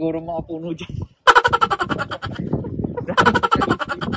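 A person's voice: a short held-pitch phrase, then after a brief break a long, fast-pulsing vocal sound.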